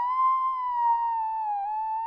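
A single held, high electronic tone in the meme's soundtrack, like a theremin, wavering slowly up and down in pitch with no beat or other instruments.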